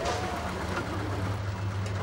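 Car engine running, a steady low hum.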